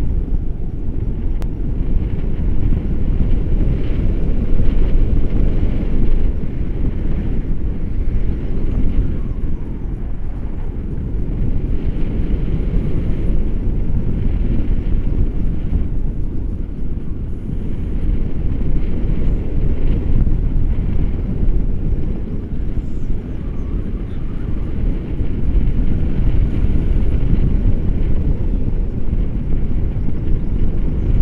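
Wind rushing over the microphone of a selfie-stick camera in paraglider flight: a steady low rumble that swells and eases every few seconds.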